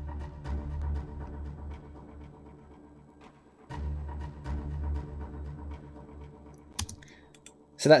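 Layered Symphobia string stabs (short, high-tuned low staccato, pizzicato and a col legno snap) sent through ping-pong and simple delays, playing a rhythmic pulse of repeated low notes. The pulse comes in two phrases, each starting strong and fading, the second beginning a little under four seconds in. A single click sounds near the end.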